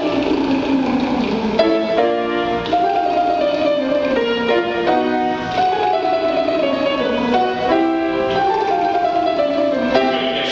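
A tenor sings a rapid tongue-trill vocal exercise, its pitch stepping up and down, over piano chords played with it.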